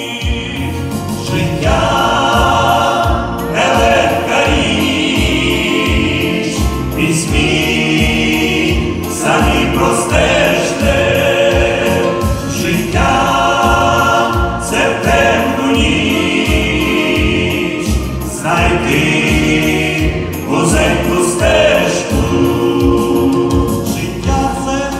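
Male vocal ensemble singing a Ukrainian gospel song in harmony through microphones and a PA, over accompaniment with a steady beat. The singing comes in phrases a few seconds long.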